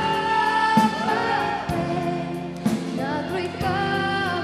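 A woman singing a held, wavering melodic line into a handheld microphone over a pop backing track with a drum hit about once a second.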